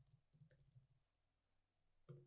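Near silence, with a few faint computer-keyboard keystroke clicks in the first second.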